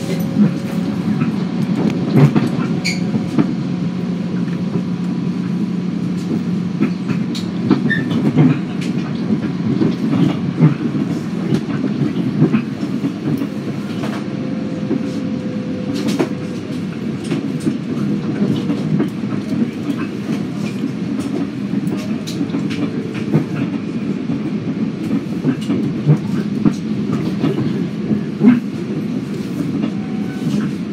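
Bombardier M7A electric commuter train running: a steady rumble of wheels on rail, with frequent irregular clicks and clacks and a faint steady hum that comes and goes.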